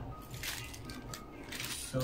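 Clear plastic packaging crinkling and rustling irregularly as a bundled computer cable is pulled out of its bag by hand.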